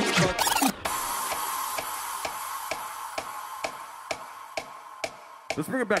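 DJ set breakdown: the track with vocals cuts out just under a second in, leaving a fading hiss with a held high tone and a steady click about twice a second. A shouted MC voice comes in near the end.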